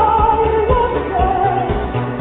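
Live synth-pop band performance: a male lead vocalist holding and gliding between sung notes over synth bass and a steady beat.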